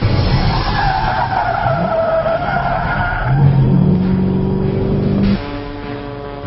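2010 Shelby GT500 drifting, heard from inside the cabin: tyres squealing over the supercharged V8. The engine revs up a little past halfway, and the sound cuts off abruptly about five seconds in.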